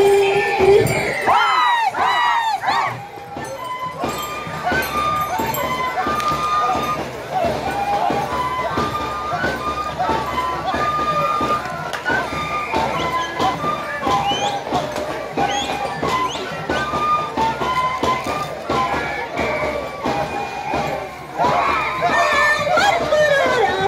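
Andean carnival music: a high melody held in steps over steady drum beats from a small hand drum, with gliding calls from voices in the first few seconds.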